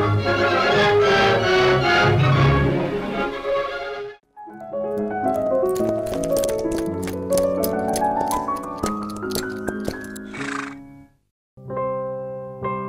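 Music that cuts off about four seconds in, then a short transition jingle: a climbing run of notes over clip-clop hoofbeats, ending in a brief horse neigh. Piano music starts just before the end.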